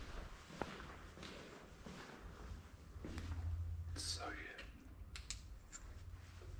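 Faint footsteps with a few sharp clicks and knocks on a debris-strewn floor, and a short faint voice about four seconds in.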